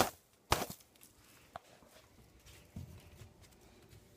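Two short knocks about half a second apart, a faint click a little later, then quiet handling rustle from a phone being moved about.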